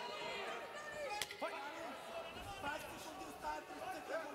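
Faint voices and shouts from the arena crowd around the cage, with one sharp knock about a second in.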